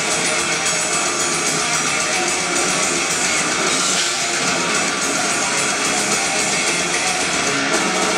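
Melodic death metal band playing live at full volume through a club PA: distorted electric guitars, bass and drum kit in an instrumental passage with no vocals.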